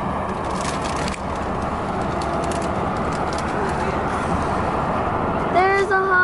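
Steady road and wind noise from a car travelling at highway speed. A voice begins just before the end.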